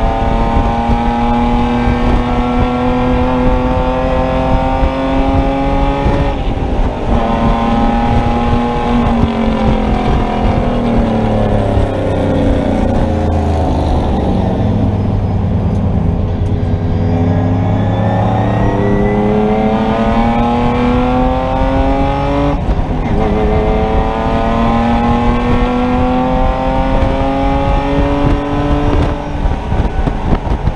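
Race car engine heard from inside the caged cockpit, revving up under acceleration with an upshift about six seconds in. It falls in pitch as the car slows for a corner near the middle, then pulls up through the revs again with another upshift about two-thirds of the way through.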